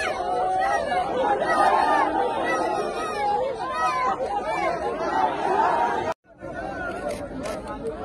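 Crowd of many voices talking and calling out at once. The sound cuts out abruptly about six seconds in, then quieter chatter resumes.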